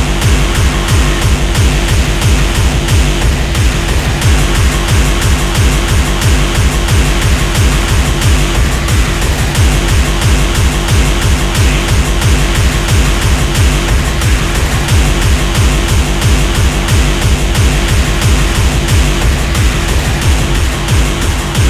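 Loud, fast free-party tekno from a live electronic set, driven by a steady, evenly repeating kick drum under dense distorted synth layers.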